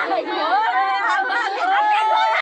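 Several women wailing and crying in grief at once, their overlapping voices rising and falling in long drawn-out cries, one cry held steady near the end.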